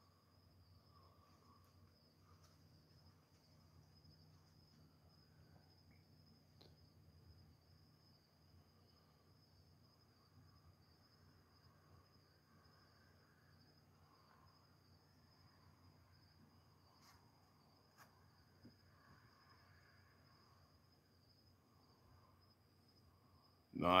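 Faint night ambience dominated by a steady high-pitched insect trill, typical of crickets, running unbroken throughout.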